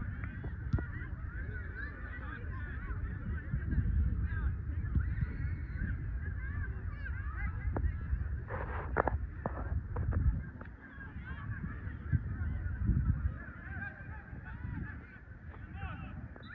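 A flock of birds calling constantly, many short overlapping calls, over wind rumble on the microphone, with a couple of sharp knocks about nine seconds in.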